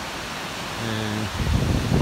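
Steady rushing of Shiraito Falls, a wide curtain of many thin cascades spilling down a cliff. From about one and a half seconds in, wind rumbles on the microphone over it.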